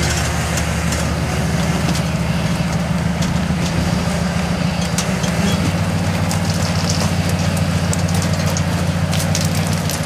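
Rock crawler buggy engine running steadily under load at a nearly constant pitch while the buggy climbs a near-vertical rock ledge, with scattered sharp clicks and knocks over it.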